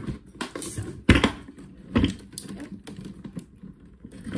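Knocks and clicks of a hard-shell suitcase being handled, with a loud knock about a second in, another about two seconds in, and lighter clicks between.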